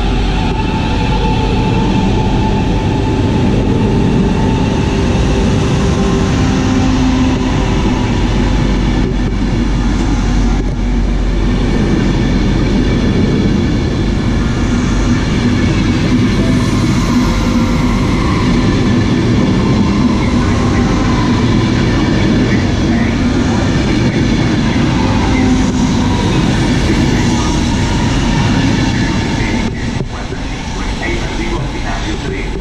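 ETR 460 Frecciabianca electric tilting train pulling out past the platform: its wheels on the rails and its running gear make a loud, steady rolling noise as the carriages go by. The sound drops near the end as the last car passes and the train draws away.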